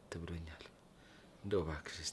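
Speech only: two short spoken phrases with a pause between them.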